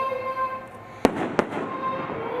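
A young girl singing the national anthem into a microphone holds a note, breaks off, and two sharp pops sound about a third of a second apart before her singing resumes.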